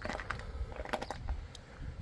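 A few light clicks and taps, clustered about a second in, over a low rumble of wind on the microphone.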